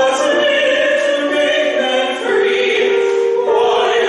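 A woman and a man singing a classical-style duet in long held notes, with piano accompaniment.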